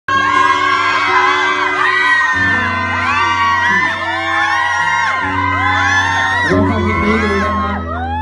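An audience screaming and whooping, many high voices overlapping, over a live band holding sustained chords with a steady bass that moves to a new note a few times.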